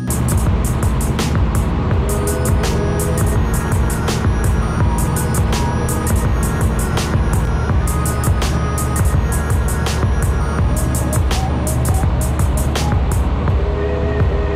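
Background music with a steady beat and a short melodic line, laid over the steady drone of the light aircraft's piston engine and propeller as heard in the cabin.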